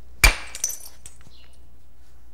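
A large antler billet striking the edge of a stone cleaver during knapping, soft-hammer percussion that detaches a large thin flake. One sharp crack about a quarter-second in, then a few lighter clinks and ticks.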